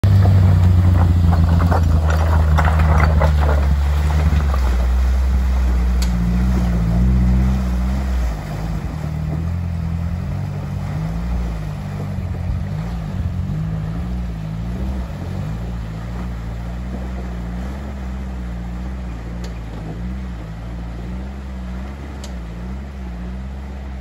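Small off-road 4x4's engine running as it drives down the bank and wades across a river ford, its note rising and falling with the throttle. It is loudest at first and fades steadily as the vehicle moves away across the water.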